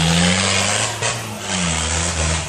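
Off-road 4x4's engine pulling the vehicle up a muddy dirt track: its note climbs a little at first and drops back about halfway through, under a steady hiss.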